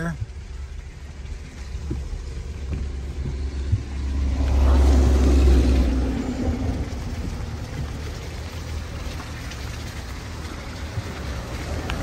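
Low, steady rumble of a car cabin while driving slowly, with a louder rumbling surge about four seconds in that fades over the next two seconds, then steady background noise.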